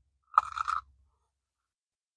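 A single short crunch, about half a second long, of teeth biting through a sandwich of crispy fried breaded pollock fillet on a toasted bun.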